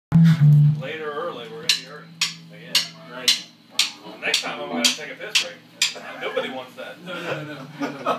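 People talking in a band rehearsal room, opening with a loud low amplified hum in the first second. A sharp tick repeats evenly about twice a second for around four seconds, in time like a count or beat.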